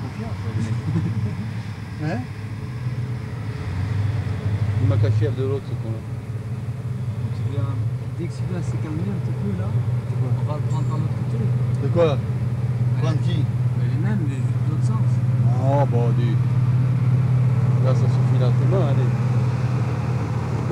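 Diesel engine of a Lectra Haul diesel-electric mine haul truck running with a steady low drone, getting louder about halfway through and then holding at that level.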